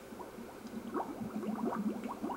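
Underwater bubbling for a cut-out scuba diver: a stream of short blips, each rising quickly in pitch, sparse at first and growing faster and louder.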